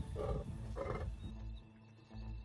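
A lion giving two short, gruff growls about half a second apart, over a low rumble.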